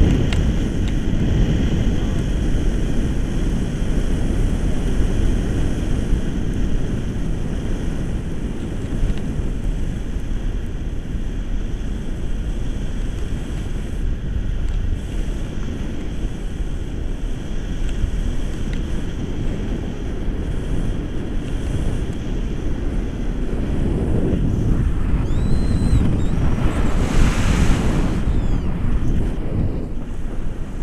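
Wind from the paraglider's flight rushing over the camera microphone, a steady rumbling buffeting that swells louder for a few seconds near the end.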